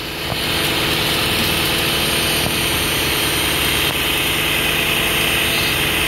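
A side-by-side utility vehicle's engine runs steadily as it drives a front-mounted DIY vertical hedger into brush. About half a second in the sound gets louder, and a steady higher whirring joins it and holds.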